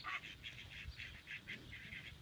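Small flock of ducks quacking faintly in a quick, even series of short calls, about five a second.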